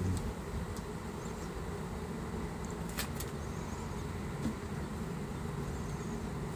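Honeybees buzzing in a steady low hum around an open Langstroth hive box. A couple of sharp wooden clicks come a little after halfway as the frames are handled.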